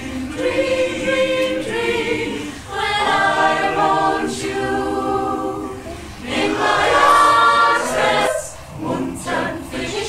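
Mixed choir of men's and women's voices singing held chords in harmony, phrase by phrase, with brief breaths between phrases about three, six and eight and a half seconds in.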